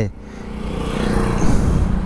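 A motor vehicle's engine, steadily growing louder as it approaches, its pitch dropping slightly near the end as it goes by.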